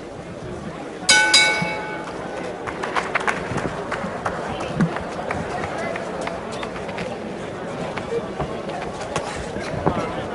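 Boxing ring bell rung about a second in, starting the round: a loud, bright ring that dies away within a second. After it comes arena crowd noise and voices, with scattered sharp taps as the boxers move and exchange punches.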